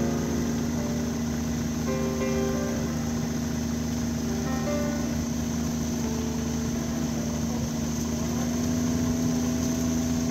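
Snowmobile engine running steadily at low speed, an unchanging hum. Faint background music of short held notes is laid over it.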